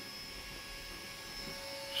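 Faint steady hum with a thin high-pitched whine: room tone, with no distinct event.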